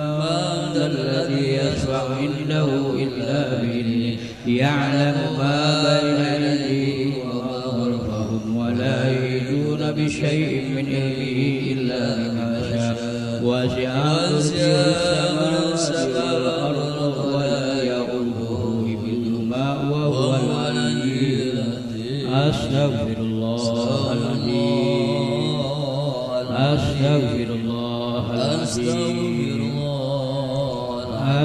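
A man's voice chanting Arabic Quranic recitation into a microphone, in long, melodically drawn-out held notes that slide slowly up and down.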